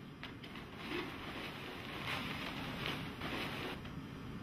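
Rustling and crinkling of sterile wrapping material as a wrapped surgical pack is handled and unfolded, with a few small clicks near the start and the rustling growing louder from about a second in.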